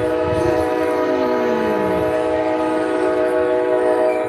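Locomotive air horn sounding one long, steady, multi-note chord.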